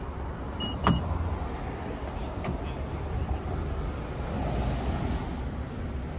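A car door latch clicking open about a second in, just after a brief high beep, over a steady low rumble of traffic.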